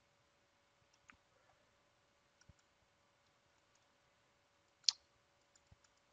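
Near silence broken by a few faint clicks from working a computer, with one sharper click about five seconds in, over a faint steady hum.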